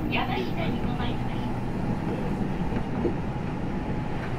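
Inside a JR West 225 series 0 electric multiple unit with Toyo IGBT inverter drive running along the line: a steady low rumble from the wheels and running gear on the rails. A voice talks over it in the first second or so.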